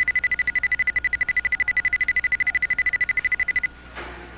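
An alarm or buzzer tone: a single high beep pulsing rapidly and evenly, about a dozen pulses a second. It cuts off suddenly near the end.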